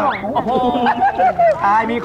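Speech: a person's voice, with long drawn-out vowels that bend up and down in pitch.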